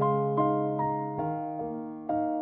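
Slow piano passage from a sad ballad, with notes and chords struck about every half second over a held bass note, each one ringing and fading.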